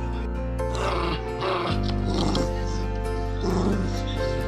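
Background music, with a dog vocalizing over it in three short bursts.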